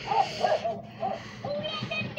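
Gemmy animated plush prisoner dog toy playing its built-in sound clip: a recorded voice first, then its song starting about a second and a half in.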